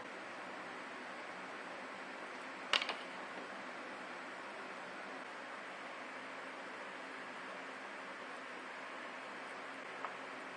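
A hand wire stripper biting through and pulling the insulation off extension-cord wire, heard as one sharp click about three seconds in, over a steady low hiss.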